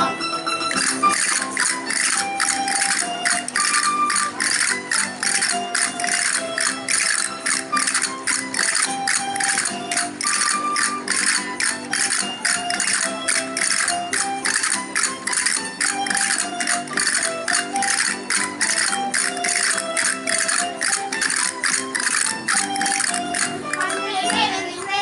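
Instrumental Aragonese folk dance music: a stepping melody over an even, sharp percussion beat of about three strikes a second, with a jingling, tambourine-like edge.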